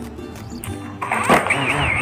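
Background music; about a second in, a DJI Mavic Mini's motors start up for an auto take-off and their whine begins to rise.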